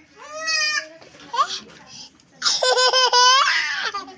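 A small child squealing briefly, then laughing loudly in a quick run of high-pitched ha-ha's in the second half.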